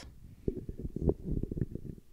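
Handling noise from a handheld microphone being passed from one person's hand to another's: low, irregular thuds and rubbing rumbles.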